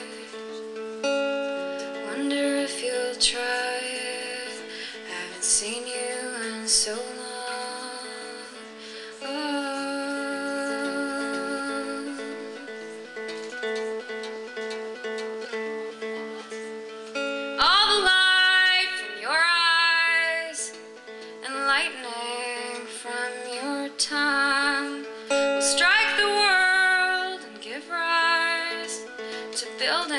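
A woman singing live to her own acoustic guitar. The guitar notes ring steadily throughout, and the voice comes in louder in the second half, about seventeen seconds in.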